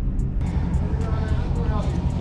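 The 392 HEMI V8 of a 2020 Dodge Charger Scat Pack running at low speed, a steady low rumble heard from inside the cabin.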